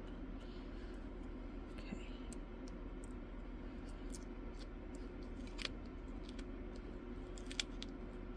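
Faint ticks and scratches of a scalpel blade cutting along clear plastic tape at the corner of a diamond-painting canvas, over a steady low hum. The sharpest ticks come about five and a half and seven and a half seconds in.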